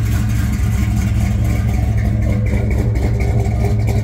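1972 Buick GS 455 V8 idling steadily, running good with its old HEI ignition module put back in the distributor.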